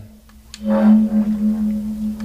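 A steady low humming tone with fainter overtones swelling in about half a second in.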